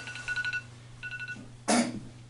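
Two faint, short, high buzzing tones, then a short cough about three-quarters of the way through.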